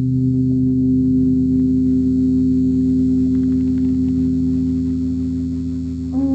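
Closing music: a held electric guitar chord with effects, struck just before and ringing on, slowly fading.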